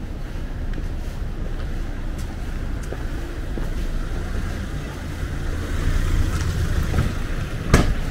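Low rumble of wind on the microphone, swelling near the end, with a single sharp knock just before the end.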